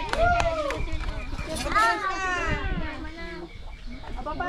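Chickens calling in short rising-and-falling squawks, one near the start and a longer one about two seconds in, over indistinct chatter.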